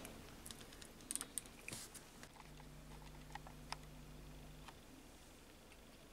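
Faint light clicks and taps of fingers handling the small parts of an opened mini drill's housing and spindle, a few scattered over the first four seconds. A faint low hum sounds for about two seconds in the middle.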